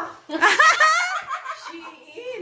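A woman laughing: a burst of quavering laughter starts about a third of a second in and trails off after about a second.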